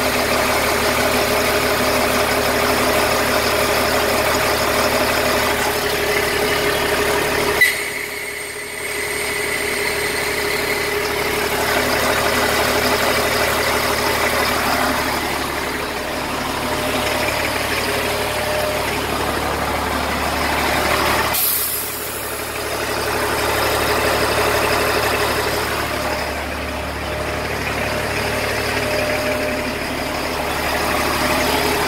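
An LMTV military truck's diesel engine idling steadily. A brief sharp sound comes about eight seconds in.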